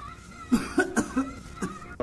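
A man retching and gagging as if throwing up: about five short, sudden coughing heaves in quick succession, starting about half a second in.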